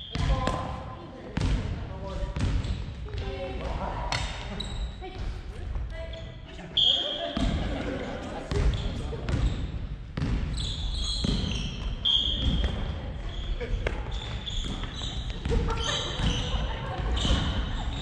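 Family badminton rally in a large, echoing gym: repeated sharp racket hits on the shuttlecock, footsteps and short high sneaker squeaks on the wooden floor, with indistinct voices in the background.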